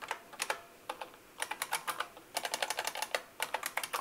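Typing on a computer keyboard: a few scattered key clicks at first, then a quicker run of keystrokes from about a second and a half in.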